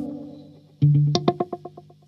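Electric guitar through a Strymon El Capistan tape-echo pedal in its fixed-head slapback mode. A ringing note dies away, then a new note is picked just under a second in and repeats in quick, fading echoes, about ten a second.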